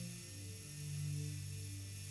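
Soft background music: low sustained notes, with a change of chord within the first second.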